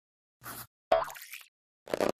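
Cartoon sound effects: a short sound about half a second in, then a louder springy one about a second in that rings briefly and fades, and another short burst near the end.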